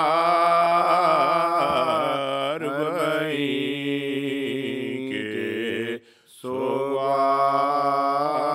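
Men's voices chanting an Urdu mourning elegy unaccompanied, in long held, wavering notes. There is a brief break for breath about six seconds in, and then the chant resumes.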